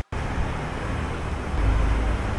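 Steady low background rumble with hiss, louder from about one and a half seconds in, after a brief dropout at the very start.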